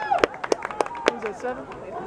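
Football stadium crowd after a play: scattered voices and a run of sharp claps.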